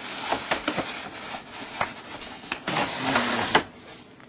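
Toy packaging being opened by hand: a clear plastic blister tray and cardboard box crackling and rustling, with scattered sharp clicks. There is a louder burst of rustling about three seconds in.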